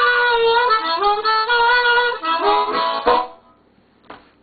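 Harmonica played with the hands cupped around it: held notes and chords, with a bent, sliding note near the start, changing pitch every half second or so. The playing stops about three seconds in.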